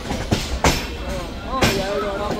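Passenger coach's wheels rolling on the track with a steady rumble, clacking sharply over rail joints three times at uneven spacing. Heard through the open coach door.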